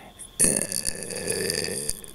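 A man's drawn-out hesitation sound, a held 'uh', lasting about a second and a half.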